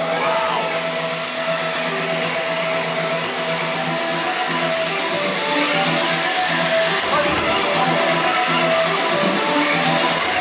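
Electric motors of small combat robots whining, their pitch rising and falling as they drive and attack. Steady background music plays over them.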